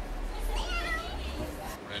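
A small boy meowing like a cat: one high, wavering meow lasting about a second.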